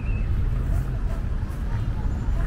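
Outdoor park ambience: a steady low rumble with a short bird chirp right at the start, and faint voices in the distance.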